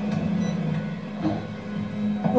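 TV drama's background score: a low, steady held drone, played through a television's speaker.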